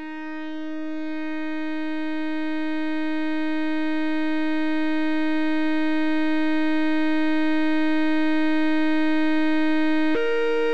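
A single held synthesizer note, one steady pitch rich in overtones, slowly swelling louder without a break.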